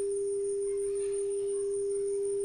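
Steady 400 Hz sine tone from a multimedia speaker, fed by a smartphone signal-generator app: one pure, unchanging pitch.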